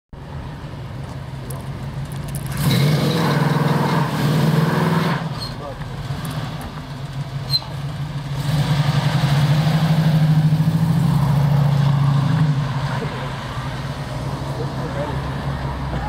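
Classic Dodge Challenger engine revved hard during a burnout, in two long bursts: one about three seconds in and a longer one from about eight to twelve seconds, idling lower in between and afterwards.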